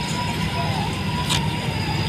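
Diesel engine of a crawler crane running at idle, a steady low drone, with a single sharp click about halfway through.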